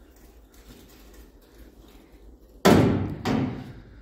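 Steel convertible top frame of a 1959–60 Chevrolet Impala being lowered by hand, coming down with a sudden loud clunk after a couple of quiet seconds and a second, lighter knock about half a second later.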